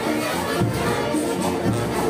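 Marching band music played in the street, brass over a steady beat of about two a second, mixed with crowd noise.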